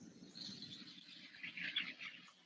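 Faint outdoor background with birds chirping, most clearly about a second and a half in, over a low steady hum.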